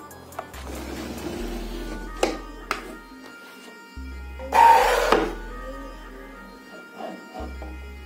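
Instrumental background music, with small clicks and knocks from miniature wooden dollhouse furniture being handled and set down. The loudest sound is a louder noisy knock-and-slide lasting under a second, about halfway through, as a small cabinet is pushed into place.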